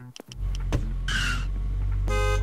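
Low, steady rumble of a car pulling up close, with a short squeal about a second in as it brakes.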